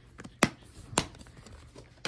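Two sharp plastic clicks about half a second apart, with a few fainter ticks, from a plastic DVD case being handled.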